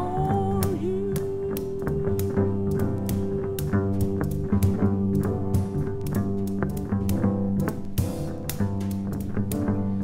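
Live soul-gospel band playing an instrumental passage: a plucked upright bass line under steady drum and cymbal strokes, with one long held note through the first six seconds or so.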